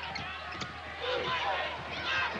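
Arena sound of a live basketball game: a ball bounced on the hardwood court a few times early on, amid crowd noise, with voices in the second half.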